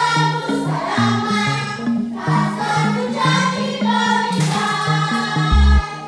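A group of voices singing together as a choir, small children among them, led by a woman. A deep bass note comes in just before the end.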